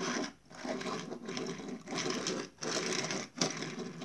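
Plastic wheels of a die-cast toy car rolling back and forth on a wooden tabletop, a gritty rasp in about six short strokes.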